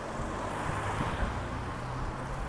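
A car driving past on a wet road: a steady hiss of tyres on the wet surface over a low engine hum.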